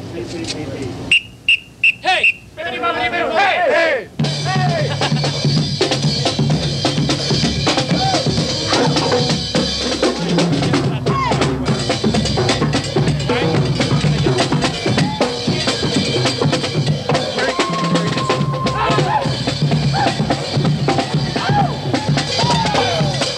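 Voices and crowd chatter for the first few seconds, then band music with a steady drum beat starts suddenly about four seconds in and plays on at an even level.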